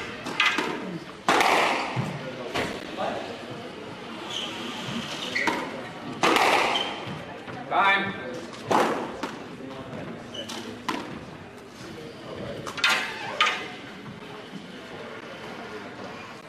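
A squash ball struck by rackets and smacking off the court walls in a pre-match knock-up, about a dozen sharp cracks at uneven intervals that stop about 13 seconds in, ringing in a large hall.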